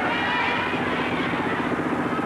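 A motor vehicle engine running with a steady drone and a fast, even pulse, with faint voices above it near the start.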